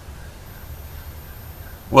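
Quiet, steady background noise with a low rumble and no distinct sound events; a man starts speaking at the very end.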